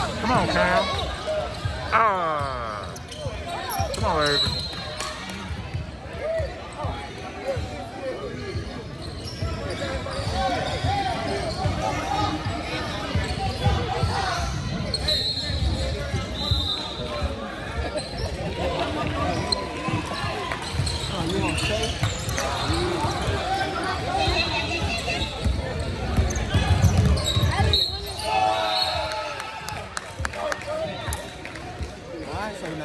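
Basketball game in play on a hardwood gym court: a ball bouncing and dribbling, with players' and spectators' voices throughout, echoing in a large hall.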